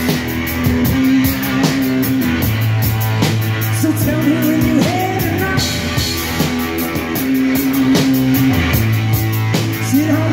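Live rock music from a guitar-and-drums duo: a distorted electric guitar riffing with bent, sliding notes over a driving drum-kit beat, an instrumental passage with no sung words.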